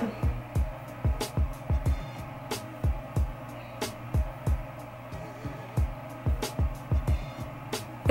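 Background music with a steady beat: low kick-drum thuds and a sharper hit about every second and a bit, over a sustained low note.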